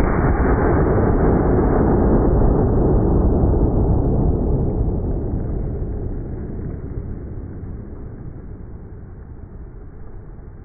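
A slowed-down gunshot from a Smith & Wesson .500 Magnum revolver firing a heavy 635-grain hollow point: a deep, long boom that begins at full strength and slowly fades away over about ten seconds.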